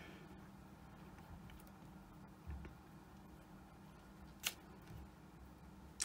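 Near silence: low steady room hum, with one short sharp click about four and a half seconds in.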